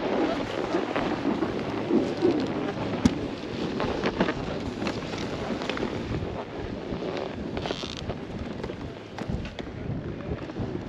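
Wind buffeting the microphone in a steady rumble, with rustling and scattered sharp knocks from gloved hands handling gear, the loudest knock about three seconds in.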